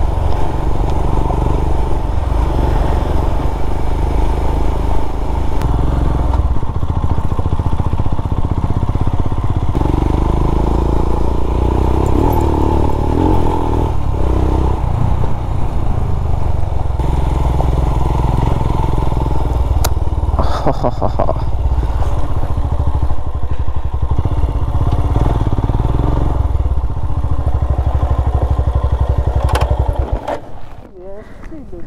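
Royal Enfield Himalayan's single-cylinder engine running as the motorcycle is ridden, its note shifting several times with the throttle, with a few knocks about twenty seconds in.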